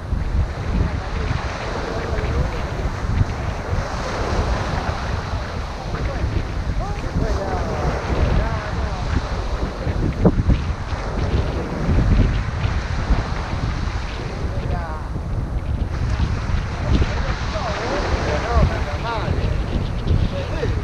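Wind buffeting the microphone over small surf breaking on a sandy beach, a steady rumble with the wash of the waves.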